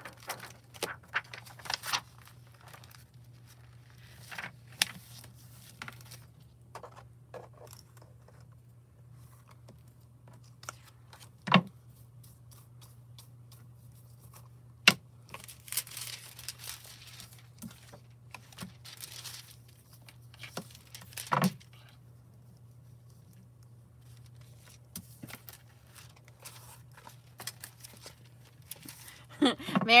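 Thin metallic transfer foil sheets crinkling and rustling as they are handled and laid out. There are three sharp clicks or taps spread through the handling, over a faint steady low hum.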